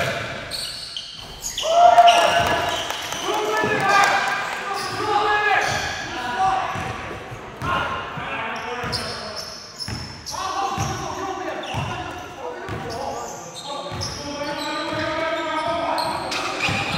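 A basketball being dribbled on a hardwood gym floor, with repeated bounces under players' indistinct calls and shouts.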